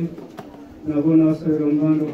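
A priest's voice chanting liturgy in long, steady held notes. It breaks off briefly near the start with a single click, then resumes for the last second.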